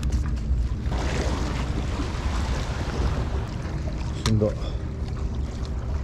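Steady low rumble of wind and sea. A hiss swells for a few seconds in the middle.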